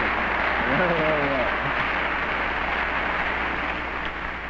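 Studio audience applauding steadily, dying away near the end, with a brief voice heard through it about a second in.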